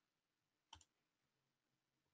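Near silence, with one faint, short click about three-quarters of a second in.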